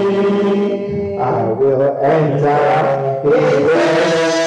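Voices singing a slow, chant-like hymn with long held notes, the melody moving to new notes about a second in.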